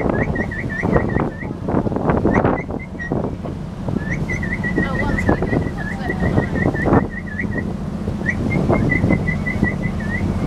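A boat's engine runs with a steady low hum while water rushes and splashes along the hull. Over it, a high chirping whistle repeats about four times a second in several runs.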